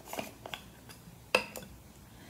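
Lid of a loose-powder jar being unscrewed and handled: a few small clicks and scrapes, then a sharper click about a second and a half in as the lid is set down on the table.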